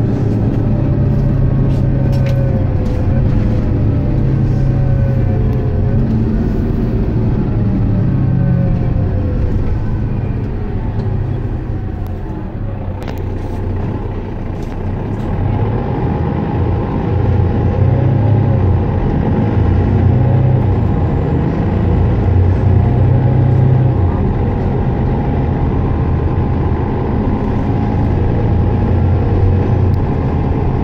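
Mercedes-Benz Citaro bus's diesel engine running as the bus drives, heard from inside the passenger cabin. A whine rises and falls in pitch as the speed changes. The sound dips a little near the middle and then grows louder again, with a few short clicks.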